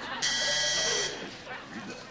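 A telephone switchboard buzzer sounds once, a steady electric buzz lasting just under a second, signalling an incoming call.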